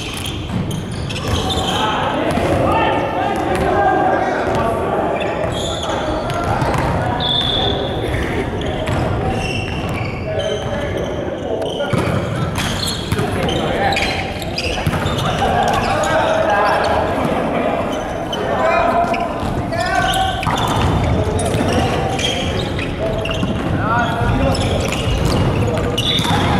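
Volleyball play in a large, echoing gymnasium: players' voices calling out and chattering over one another, with repeated sharp thuds of the ball being struck and bouncing on the wooden floor.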